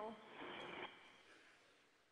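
Police dispatch radio channel: the tail of a dispatcher's word in a narrow, tinny radio voice, a short rush of noise about half a second in, then the channel hiss fades away.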